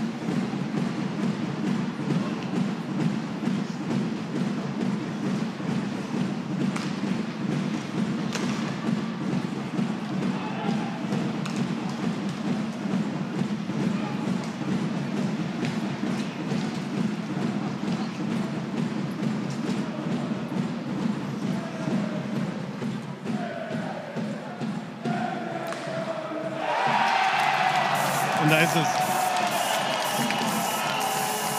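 Ice hockey arena sound during play: a steady crowd murmur with scattered clacks of sticks and puck. About 27 s in it suddenly gets louder as the crowd cheers and music starts up, the home crowd celebrating a goal.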